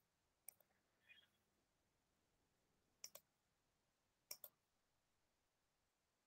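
Three faint computer mouse clicks, each a quick pair of ticks from the button going down and coming up, against near silence.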